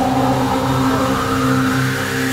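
Electronic dance music in a build-up: a sustained low drone with a noise sweep slowly rising in pitch.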